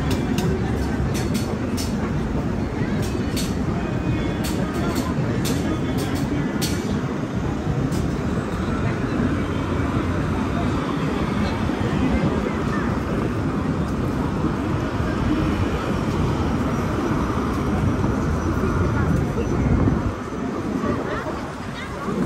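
Busy city-street ambience: traffic running past and the chatter of a passing crowd. A run of short sharp clicks sounds through the first several seconds.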